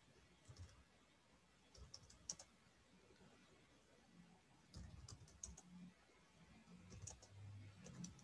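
Faint computer keyboard typing, keystrokes coming in a few short bursts.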